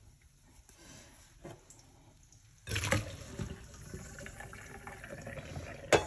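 Water starts pouring suddenly about three seconds in and runs on steadily into a colander of lentils in a stainless steel sink, as the lentils are rinsed. Before it, only a few faint ticks.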